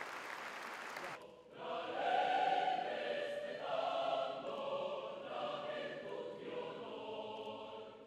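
Audience applauding briefly, then a choir starts singing about a second and a half in, voices holding long notes that change every second or two.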